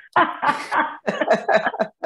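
A woman laughing heartily: one loud, breathy burst, then several shorter bursts of laughter.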